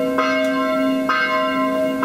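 A church bell tolling, struck twice about a second apart, each stroke ringing on with a long, steady hum into the next.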